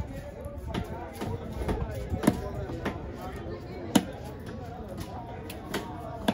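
A large fish-cutting knife chopping trevally pieces on a wooden log block: several sharp strikes at uneven intervals, the loudest about four seconds in.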